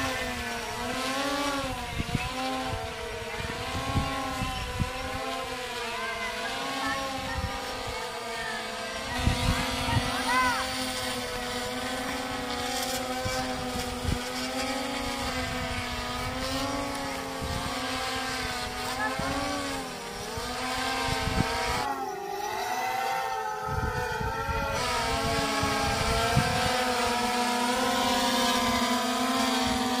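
Quadcopter drone flying overhead with a water bottle slung beneath it, its propellers giving a steady multi-tone buzz whose pitch wavers up and down as the motors adjust. Wind rumbles on the microphone.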